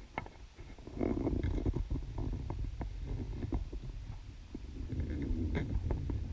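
Muffled underwater sound heard through a camera housing at depth: a steady low rumble of water moving around the divers, with scattered small clicks and knocks as they handle the dive line and kick their fins.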